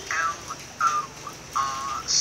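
Recorded dialogue from a coursebook listening exercise, a telephone conversation played back, the voices thin with little low end.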